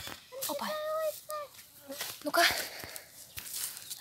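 Rustling of a hand-held mesh catching net being brought down and pressed onto grass, with a few small clicks and a loud rustle about two seconds in, among short spoken exclamations.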